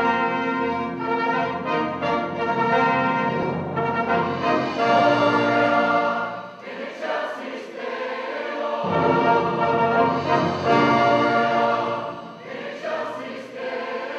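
Mixed choir singing with orchestral accompaniment of strings and horn, in sustained phrases with short breaths between them.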